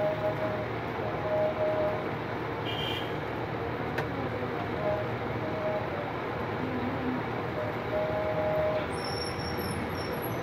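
A steady background din with short, repeated level tones in it, a single click about four seconds in, and high chirping tones near the end.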